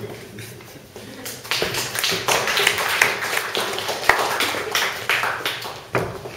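A small audience clapping, a dense patter of many hand claps that starts about a second and a half in.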